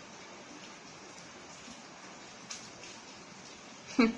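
Quiet steady room tone with recording hiss, broken once by a faint brief tick about two and a half seconds in.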